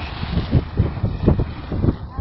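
Wind buffeting the microphone in loud, irregular low gusts, several a second, over a lighter hiss.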